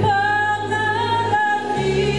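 A woman singing into a microphone, holding a long high note that lifts slightly about a second in before moving to a new note, over low instrumental accompaniment that drops out briefly near the end.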